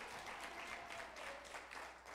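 Audience applauding, the clapping fading gradually.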